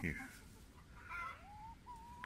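A hen giving a faint drawn-out call from about a second in, its pitch rising and then holding steady.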